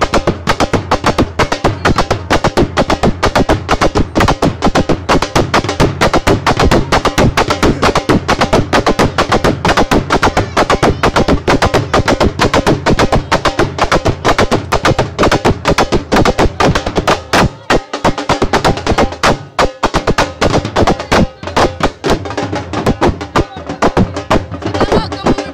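Several drums beaten hard in a fast, driving rhythm for dancing, with many strokes a second. The drumming thins out briefly about three quarters of the way through, then picks up again.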